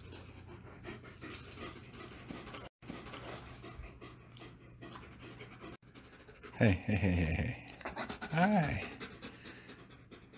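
Two German Shepherds panting, with two short voice-like sounds about two thirds of the way through and near the end.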